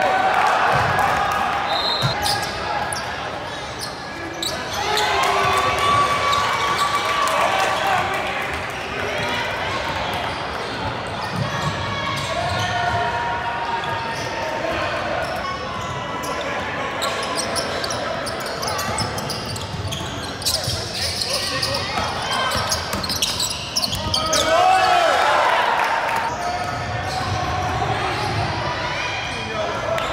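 Basketball game sounds in a large gym: a ball bouncing on the hardwood court under a steady wash of indistinct shouting and talk from players and spectators, echoing in the hall.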